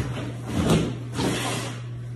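Packaging rustling and sliding in two soft bursts as a plastic bag of hardware is pulled out of a cardboard shipping box.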